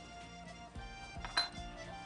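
Soft background music with a couple of light clinks of a utensil against dishware, the clearest about one and a half seconds in.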